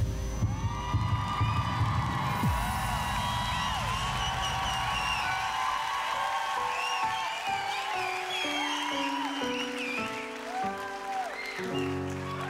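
Studio audience cheering and whistling, with a grand piano starting a slow introduction of sustained single notes about halfway through.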